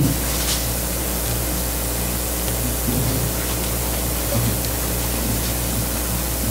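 Steady hiss and low electrical hum from a church sound system, with faint low tones held in the background.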